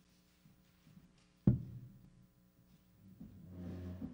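A single loud thump about one and a half seconds in, ringing out low, then a low swelling sound near the end.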